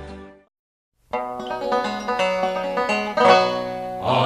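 A sung ballad recording fades out, followed by a moment of silence. About a second in, a folk song's intro begins: a plucked banjo picking out notes with a band behind it, before any singing.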